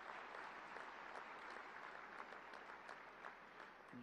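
Faint applause from an audience, many hands clapping at once.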